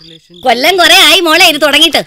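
A woman's voice in a rapid, warbling sing-song recitation, starting about half a second in after a short pause.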